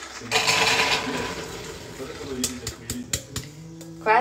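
Beans poured from a metal bowl into an electric pressure cooker's pot: a loud pouring rush starts about a third of a second in and tapers off. A few sharp clicks follow near the end.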